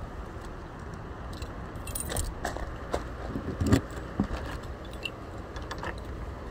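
A ring of keys jangling, with sharp clicks as a key works the lock of a travel trailer's exterior compartment; the jingling is densest about two seconds in, with a heavier knock a little later.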